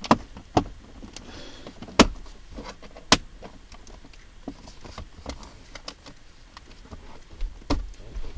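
Plastic centre-console trim being pressed and clipped into place: a string of sharp clicks and snaps, the loudest about two seconds in, with light plastic ticks and rubbing between. Near the end comes another snap as the cupholder lid is closed.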